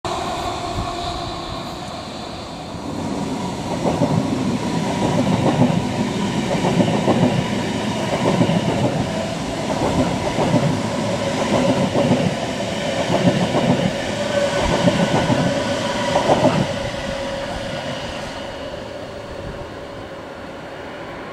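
Rhein-Ruhr-Express electric multiple unit, a Siemens Desiro HC, passing below. Its wheels clatter over the rail joints in a regular clickety-clack, over a steady electric whine. The sound swells about three seconds in and fades over the last few seconds as the train runs off.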